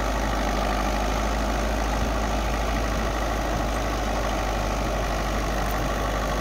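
El Nasr 60 tractor's diesel engine running steadily under load as it pulls a tine cultivator through tilled soil.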